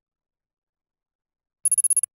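Silence, then near the end a brief, rapid trill of high, bell-like electronic pulses: an editing sound effect that plays as a picture pops onto the screen.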